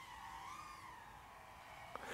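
Faint whine of a 1S micro FPV drone's motors and propellers, its pitch wavering gently up and down with the throttle; the drone is incredibly silent.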